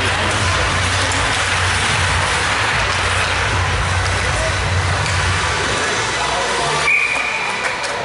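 Steady ice-rink crowd din with voices, then one short, high referee's whistle blast near the end as play is stopped.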